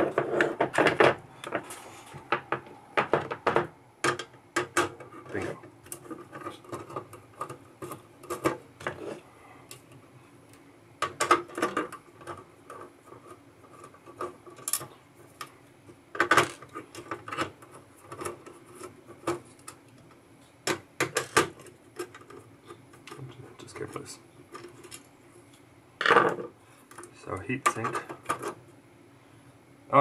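Scattered clicks and clinks of metal hand tools: nut drivers being handled and turned on the small nuts that hold a metal cover plate down on a circuit board.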